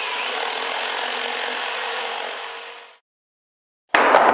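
A saw cutting through a wooden board, a steady sawing noise that fades out about three seconds in.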